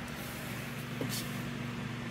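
Steady hum and airy hiss of a grow tent's fan running.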